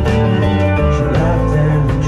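A live band playing loud and steady: guitars over a drum kit.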